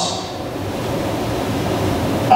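A steady, even hiss.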